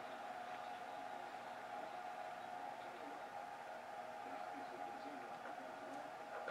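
Faint steady room tone with a thin, steady high hum; no distinct events.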